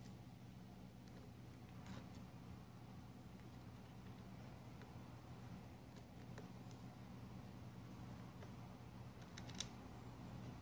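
Near silence: a low steady hum with a few faint ticks from a kitchen knife tip working a triangle-head screw on a plastic motor gearbox, and one sharper click near the end.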